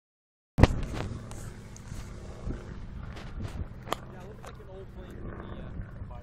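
A loud knock as the phone starts recording, then a steady low rumble with more handling knocks, typical of wind on a phone microphone, and faint voices about four seconds in.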